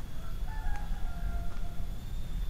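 A rooster crowing once: a single drawn-out crow lasting about a second and a half, fairly faint above a low background rumble.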